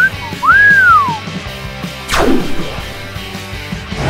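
Two whistle sound effects over background music: a short upward glide, then a longer glide that rises and falls. About two seconds in, a falling swoosh effect follows.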